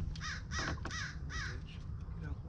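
A bird calling outdoors: a quick series of four or five short, harsh calls, each rising and falling in pitch, the last one fainter.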